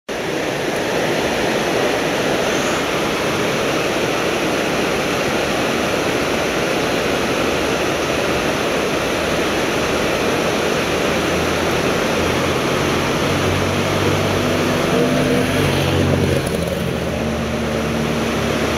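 Fast mountain river rapids rushing steadily over rocks, a continuous loud hiss of white water.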